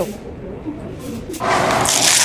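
Faint background voices in a large hall. About one and a half seconds in, a loud, even rustling hiss sets in, the sound of something rubbing on a small clip-on microphone.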